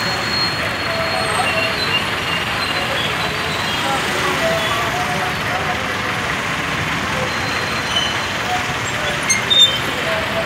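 Busy street traffic and crowd: engines of a bus, cars and motorbikes crawling in a jam, with the hubbub of many voices and occasional horn toots. A couple of sharper, louder sounds come near the end.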